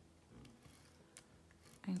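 Faint scratchy rasp of a correction-tape dispenser being run over planner paper, with a few light clicks.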